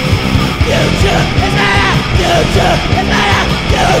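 Punk-metal song: a loud full band with drums, with shouted vocals coming in about half a second in.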